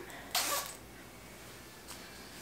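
A hoodie's zipper being pulled up in one quick rasp about half a second in, then faint room tone.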